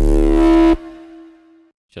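Heavily distorted drum-and-bass synth bass from Serum, run through iZotope Trash 2's multiband distortion with the mids driven and the highs blasted. One sustained, buzzy low note, thick with overtones, cuts off under a second in, and a thin high tone lingers faintly for about another second.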